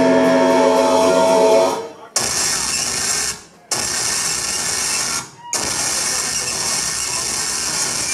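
Heavy band playing loud through the PA: a sustained distorted guitar chord rings, then cuts off about two seconds in. Three long blasts of harsh noise follow, each starting and stopping abruptly with short gaps between them.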